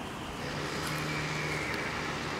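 A steady engine hum, swelling slightly from about half a second in.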